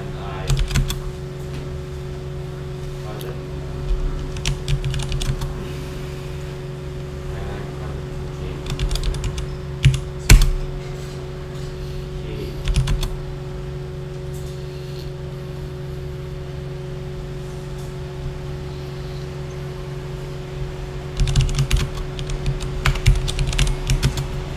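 Typing on a computer keyboard in several short bursts of key clicks with pauses between them, as a sentence is typed out, over a steady low electrical hum.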